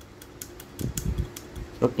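Light clicks and taps of spring-assisted diagonal cutting pliers handled in gloved hands, their jaws opening and closing, over a faint steady hum.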